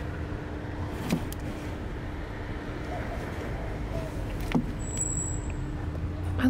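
Steady low rumble of road traffic with a faint steady hum, and two light clicks, one about a second in and one about four and a half seconds in.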